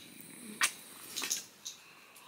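A few faint, short kiss smacks and small mouth clicks close to the microphone, spread across about a second and a half.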